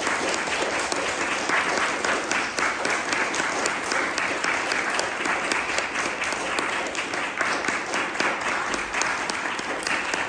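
Audience applauding steadily, a dense patter of many hands clapping in a small recital hall.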